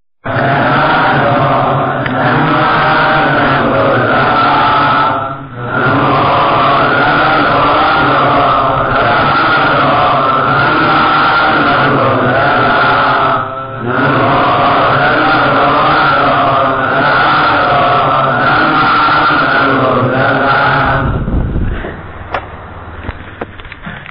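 Buddhist chanting in three long phrases, with short breaks about five and a half and fourteen seconds in.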